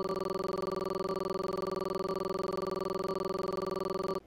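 A steady buzzy electronic tone made of several pitches sounding together, with a fast even flutter and no change in pitch or loudness.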